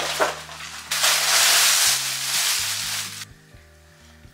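Paper packaging rustling and crinkling as a garment is pulled out of a paper shopping bag: scattered crackles, then a loud, continuous rustle that cuts off about three seconds in. Background music plays underneath.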